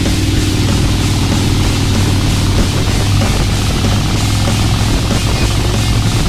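A 2005 Harley-Davidson Heritage Softail Classic's V-twin engine, fitted with a Vance & Hines exhaust, running steadily at highway cruising speed, under an even rushing of wind and road noise.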